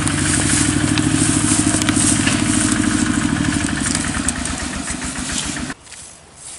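A small engine running steadily with an even low pulse, growing fainter from about four seconds in and cutting off suddenly near the end.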